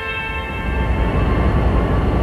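Low, steady rumble of city street traffic, with a held tone fading out within the first second.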